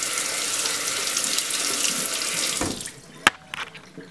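Kitchen faucet spray running, water splashing over a pH meter probe into the sink, while the probe is rinsed. The water cuts off a little under three seconds in, followed by a single sharp click.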